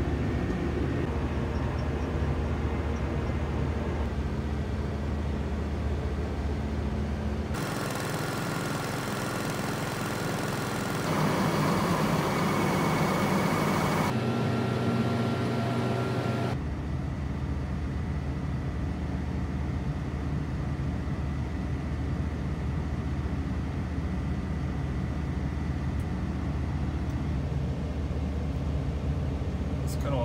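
Steady low engine drone of a RoGator self-propelled sprayer, heard inside its cab. For about nine seconds in the middle the deep drone drops away and a rougher, hissier running noise takes over, loudest near the middle, before the steady drone returns.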